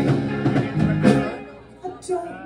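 Live rock band playing loud, with electric guitars, bass and drums. The music drops away briefly in the second second before picking up again.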